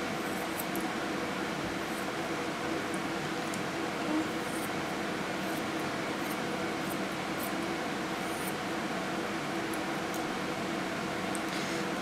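Faint, irregular snips of grooming shears cutting fur along a dog's ear, over a steady background hum.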